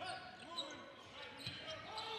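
Faint gym sound during live basketball play: distant voices of players and crowd, with a few basketball bounces on the hardwood.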